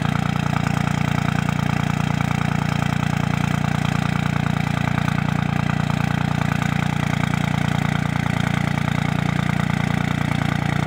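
Cummins 24-valve 5.9-litre turbo-diesel inline-six in a 2002 Dodge Ram 2500 idling steadily after a cold start, in its three-cylinder high idle, the cold-weather warm-up mode.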